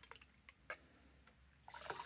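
Near silence: orange juice poured quietly into a steel jigger and then into a stainless steel shaker tin, with two faint ticks shortly before the middle.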